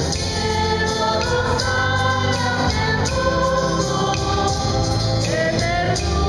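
A small church choir of men and women singing a hymn together, accompanied by a strummed acoustic guitar and an electronic keyboard.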